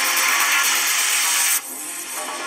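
Electronic outro music ending in a loud hissing noise sweep that cuts off suddenly about one and a half seconds in, leaving a quieter tail of the music.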